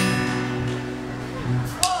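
A single guitar chord strummed once at the start and left to ring, fading over about a second and a half.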